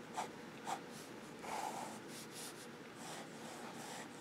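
Nib of a Noodler's Tripletail fountain pen drawing a row of short strokes on Rhodia paper with no pressure: several faint, brief sounds of nib on paper.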